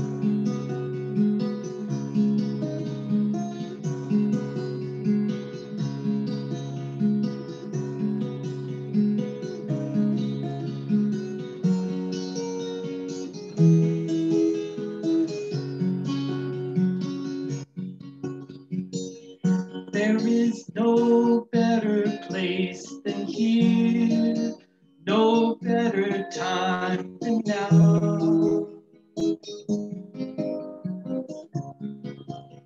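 Acoustic guitar playing a steady, repeating picked pattern as a song's opening. About halfway through the playing grows louder and more broken, with a few brief dropouts of the sound.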